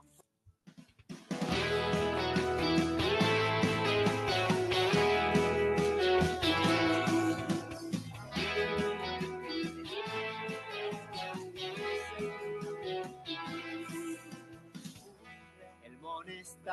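A recorded song's instrumental opening starts about a second in, with no singing yet, and gets quieter over the last few seconds.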